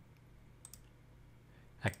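Two faint computer mouse clicks close together about two-thirds of a second in, over a low steady hum, as File Explorer is navigated to the Desktop folder.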